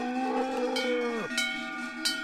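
Abondance cow mooing, one long call that falls away about a second and a half in, while the large bell at its neck clanks and rings a couple of times.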